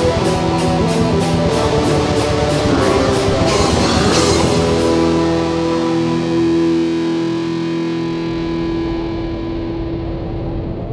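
Melodic death metal recording: distorted guitars over drums with steady cymbal hits. About halfway through the drums stop and a single held note rings on, slowly fading.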